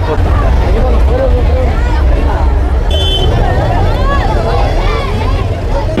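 Steady low rumble of large truck engines passing close by, with the chatter of a crowd of voices over it.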